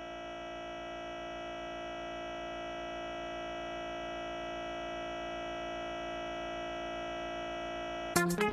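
A steady, unchanging electronic buzz made of many tones at once, with a fast flutter underneath: the stuck audio of a TV broadcast during a transmission failure.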